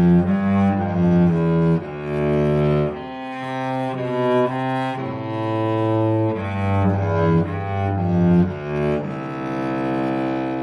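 Solo cello bowed through a study, a line of sustained notes changing every half second to a second. It settles on one long held note near the end.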